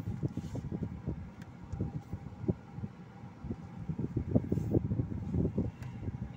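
Car cabin noise: an irregular run of dull, low thumps and rumble, with no clear steady engine note.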